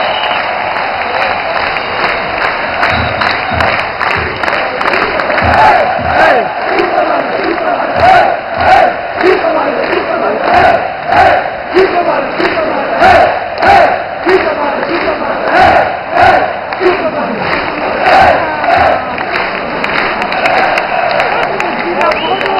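Football stadium crowd chanting and singing together, with rhythmic hand claps close by that keep time from about three seconds in.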